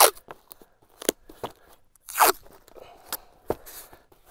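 FrogTape painter's tape being pulled off the roll and wrapped around cardboard: a series of short crackling rips, the loudest about two seconds in.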